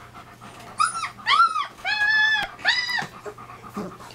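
German Shepherd puppy whining: four short high whines within about two seconds, each rising then falling in pitch, the third held longest.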